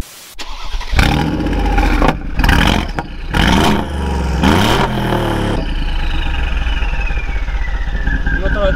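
A 2017 Mercedes-AMG G63's 5.5-litre twin-turbo V8, breathing through a full Quicksilver exhaust with the catalytic converters removed, starts with a loud burst, is blipped three times and settles into a deep idle. Over the idle a high whistle slides slowly down in pitch.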